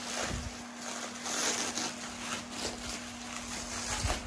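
Plastic wrapping rustling and crinkling as china pieces are unwrapped by hand, over a steady low hum.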